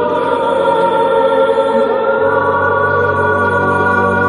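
Choral music with voices holding sustained chords; about two seconds in the harmony shifts and a low bass note comes in.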